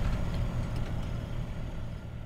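DC-3's piston radial engines idling on the ground, a steady low rumble that gradually fades down.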